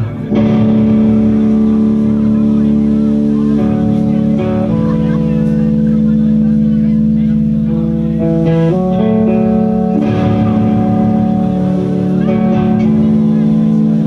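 Live band's electric guitars through amplifiers ringing out loud sustained chords that change every few seconds: the opening of a slow song.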